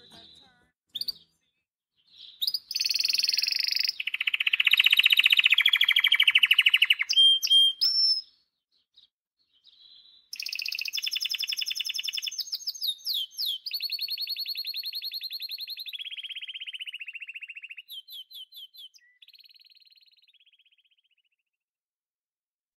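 A canary singing: two long songs of rapid rolling trills, each run held at one pitch for a second or two before switching to another. The second song fades out near the end.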